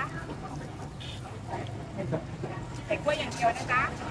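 Voices talking over steady street background noise.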